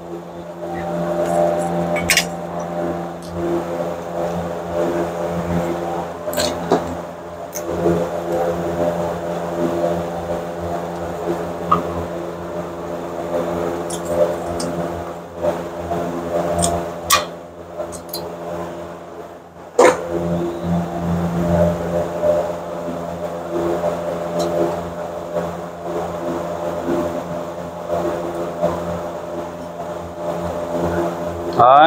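A steady mechanical hum runs throughout, under scattered sharp metallic clicks and taps as a hook tool works the springs and hardware of the rear parking-brake shoes. The loudest click comes about two-thirds of the way in.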